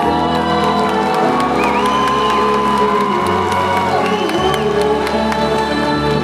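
Slow performance music carrying one long held melody note through the middle, over a bass that steps to a new note every second or so, with an audience cheering beneath it.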